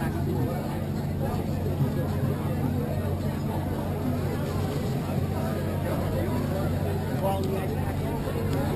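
Indistinct background conversation of several people, over a steady low hum.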